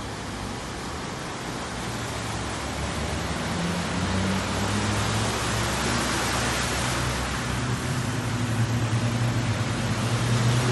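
Vehicles driving through a flooded street, a pickup truck and then a Volkswagen Kombi van: engine hum under the hiss of tyres spraying through standing water, growing steadily louder as they come closer.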